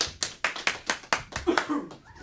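A small group clapping by hand, distinct claps at about four to five a second, in applause for a finished piano piece.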